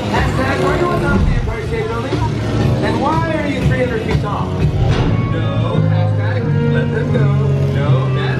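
Ride-film soundtrack playing loud in a simulator theatre: music, with voice-like calls and pitch glides in the middle and sustained bass notes from about halfway through.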